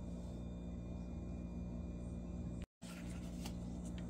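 Faint room tone with a steady low electrical hum. It cuts out completely for a split second about two and a half seconds in.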